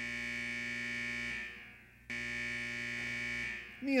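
Two identical electronic tones, a sound cue from the stage soundtrack. Each starts suddenly, holds steady for over a second and fades away, and the second comes about two seconds after the first.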